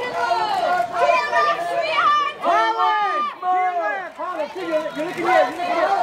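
Several photographers' voices calling out over one another, repeating her name to get her to look at their cameras.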